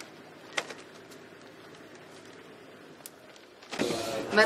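Quiet outdoor background with a sharp knock about half a second in and a fainter click near the end.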